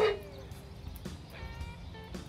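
Quiet background music with a few steady held notes.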